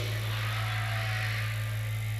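Steady low electrical hum from an outdoor public-address system between phrases of speech, over faint crowd noise.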